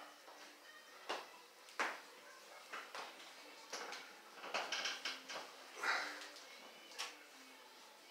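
Faint, scattered handling and movement sounds from a lifter settling onto a weight bench and taking hold of a loaded barbell: shuffles, soft knocks and breaths, with short sharp clicks about two seconds in and near the end.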